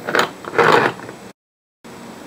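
Two short scraping, rustling sounds of hands handling packed glass jars of tomatoes and cucumbers on a countertop, then the sound cuts out abruptly for about half a second.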